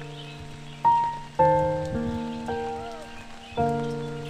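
Slow, gentle solo piano music: single notes and soft chords struck every half second to a second and left to ring and fade. A faint patter of rain lies beneath.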